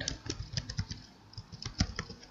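Typing on a computer keyboard: a run of irregular key clicks, several a second, with a brief lull in the middle.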